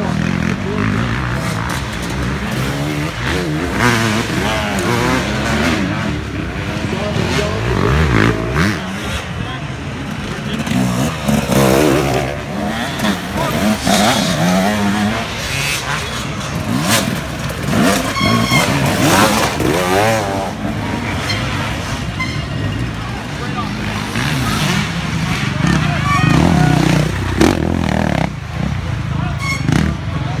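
Several dirt bike engines revving and running as bikes pass one after another on the trail, their pitch rising and falling with the throttle, with spectators' voices underneath.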